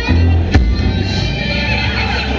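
A live acoustic band plays fiddle, mouth harp and upright bass over a steady low bass line. There is a sharp percussive hit about half a second in.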